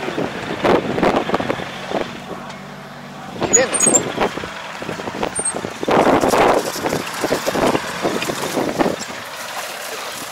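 A tractor's diesel engine runs steadily in the background, with irregular louder bursts of noise over it.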